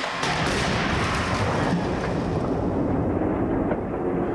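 A 2000 BMW 328i crashing at 40 mph into an offset deformable barrier in a frontal crash test. Sharp cracks at the start give way to a long, loud noisy rumble whose upper range dies down toward the end.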